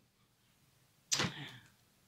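A tarot card laid down onto the spread of cards: one brief swish with a sharp start about a second in.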